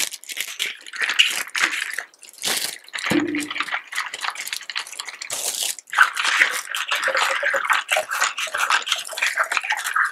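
Clear plastic wrap crackling around a fast-food drink cup as it is gripped and handled, mixed with sipping through a plastic straw. The crackle is dense and full of sharp clicks throughout.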